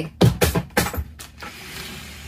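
Handling noise: several sharp knocks and crinkling rustles as a basket is moved and plastic snack packets in a wire basket are shifted, all in the first second and a half.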